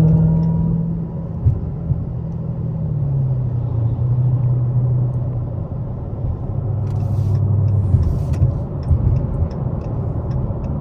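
Dodge Hellcat's supercharged 6.2-litre HEMI V8 cruising on the freeway, heard from inside the cabin. The engine drones steadily, then drops in pitch about three seconds in and again a few seconds later as it settles into a lower cruise.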